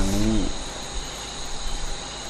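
A man's voice draws out the last syllable of a phrase, falling in pitch and stopping about half a second in. After it comes a pause of steady recording hiss with faint, steady high-pitched tones underneath.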